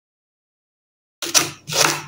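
Silence for about a second, then a kitchen knife slicing through leeks onto a wooden cutting board: two cuts about half a second apart.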